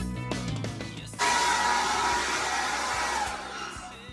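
Handheld hair dryer switched on about a second in, blowing with a steady whine, then dying away near the end as its whine drops in pitch. Rock music plays under the first second.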